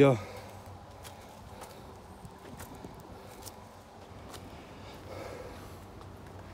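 Faint footsteps on a dirt forest trail, irregular steps about once a second, over a quiet outdoor background.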